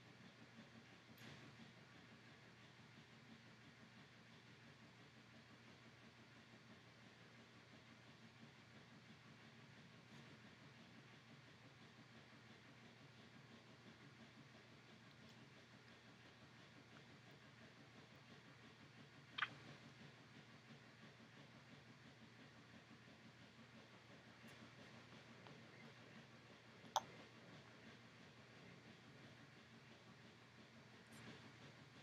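Near silence: room tone with a faint steady low hum, broken by two brief sharp clicks, one about two-thirds of the way through and another about eight seconds later.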